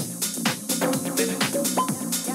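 Electronic dance music from a DJ mix, with a steady beat. The bass and the low end of the kick drum cut out at the start, leaving the hi-hats and the mid-range parts playing.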